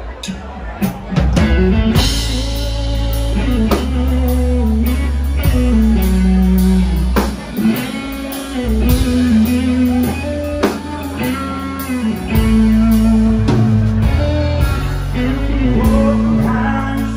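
Live band music: electric guitar, a Korg Kronos keyboard and a drum kit playing together at full volume, with a steady beat and sustained bass notes under a moving melody.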